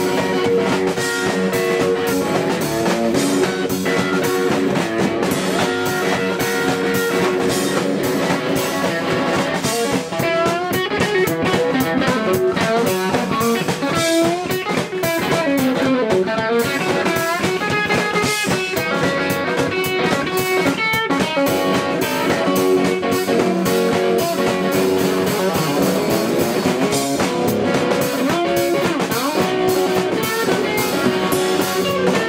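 Blues played live on a red semi-hollow-body electric guitar over a drum kit. The guitar plays lead lines with bent notes, busiest in the middle stretch.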